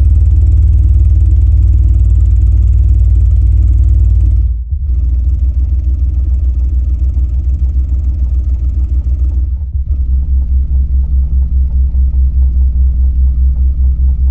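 SVS PB-16 Ultra ported 16-inch subwoofer playing very loud infrasonic test tones, stepping from 19 Hz to 20 Hz to 21 Hz with a brief break between each, heard as a deep steady rumble with a buzz of overtones; the last tone flutters quickly in level.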